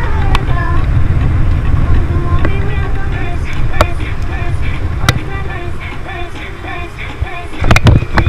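Steady low rumble of wind and road noise on the camera microphone of a moving bicycle in traffic, with music playing over it. A few sharp clicks, then a run of loud knocks starting near the end.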